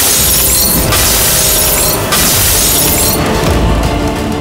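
Glass of a framed photograph shattering on a hard floor, heard as two loud breaking-glass crashes about two seconds apart, over dramatic background music.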